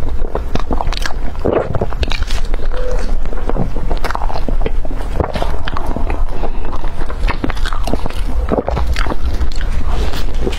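Close-miked chewing of a soft, cream-filled bread roll topped with pork floss: wet mouth smacks and many small clicks, with another bite taken into the roll near the end.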